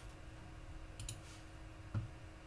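Faint clicks from working at a computer: a couple of quick clicks about a second in, then one short, louder knock near the end.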